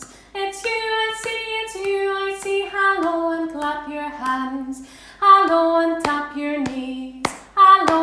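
A woman singing a simple children's hello song unaccompanied, with a few sharp hand claps, the loudest near the end.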